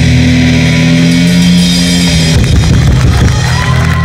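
Live rock-fusion band playing: electric guitar, bass and keyboard holding sustained chords. The drums are less prominent than just before. The sound turns briefly ragged a little past halfway, and a high gliding tone comes in near the end.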